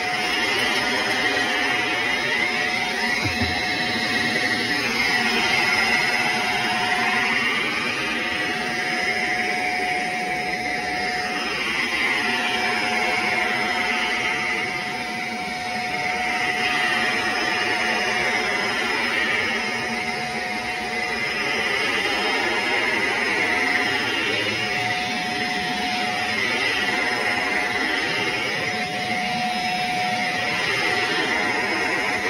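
Shark upright vacuum cleaner running on carpet: a steady motor whine under a rushing suction noise that swells and eases every few seconds as the vacuum is pushed back and forth.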